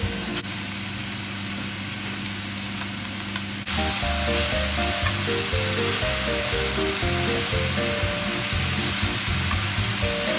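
Cabbage and onions sizzling in an oiled frying pan as they are stirred with chopsticks. Background music with a stepping melody and bassline drops out briefly near the start and comes back in about four seconds in.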